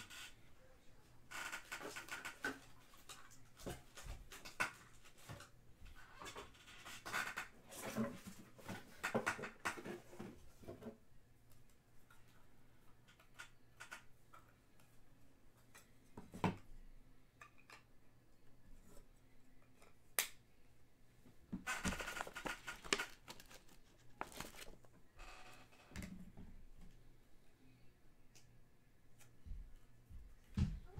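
Spells of rustling and crinkling from trading-card packaging and cards being handled, with a few sharp clicks between them.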